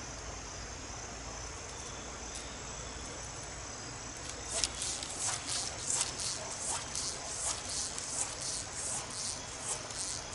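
Evening insect chorus: a steady high-pitched drone, joined about halfway through by a run of short rasping chirps, roughly two a second.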